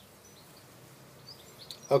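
Quiet room tone with a few faint, short high chirps in the second half, then a man's voice starting at the very end.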